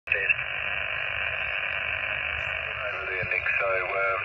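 Receiver hiss from a Yaesu portable HF transceiver's speaker, tuned to lower sideband on the 40-metre band. A single-sideband voice comes up out of the noise near the end.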